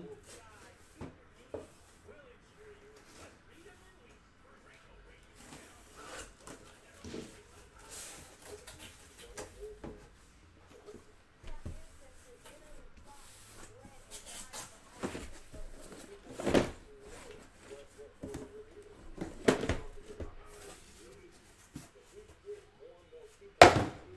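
A cardboard shipping case being opened by hand: rustling and scraping of cardboard flaps, then several knocks as the boxes inside are handled. The loudest is a sharp knock near the end.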